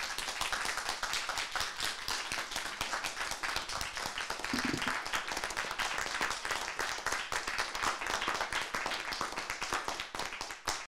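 Small audience applauding: many overlapping hand claps at an even level.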